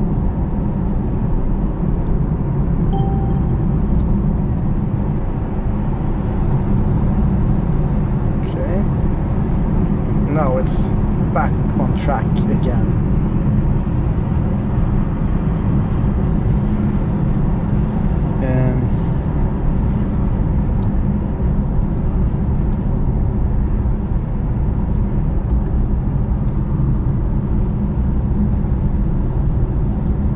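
Steady low road and drivetrain rumble inside the cabin of a Mercedes-AMG E63 S at motorway cruising speed, with a few brief higher sounds and clicks past the first third.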